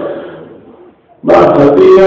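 A man's chanting voice holds a long note that fades away, then after a brief pause the next chanted phrase starts abruptly about a second and a quarter in.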